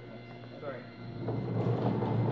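Automatic door opener swinging a door open after its push button is pressed: a low hum that builds from about a second in.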